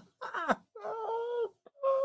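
A man groaning in exasperation: a short falling moan, then two longer held moans, the last one louder.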